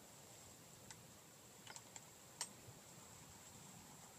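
Near silence, with a faint steady high tone and a few faint, scattered clicks, the loudest about two and a half seconds in.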